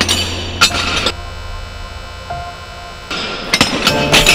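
Clanking and clinking of loose steel face-plates (Menashe Kadishman's 'Fallen Leaves' installation) shifting and knocking together underfoot as people walk over them. The clatter drops away for about two seconds in the middle, then starts again.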